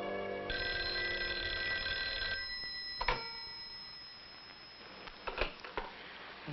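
Rotary-dial wall telephone's bell ringing once for about two seconds, a test ring of a newly installed phone, followed by a sharp click and a few lighter clicks of the handset being handled near the end.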